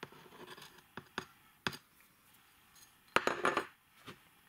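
A small china saucer: light scraping and three sharp taps as the last sand-and-seed mix is shaken off it, then a short clinking clatter about three seconds in as it is set down on a wooden table, the loudest sound.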